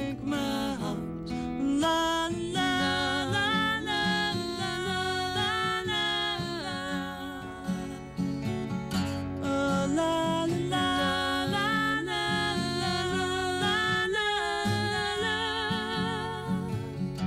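Two women singing together over two strummed acoustic guitars, their held notes wavering with vibrato.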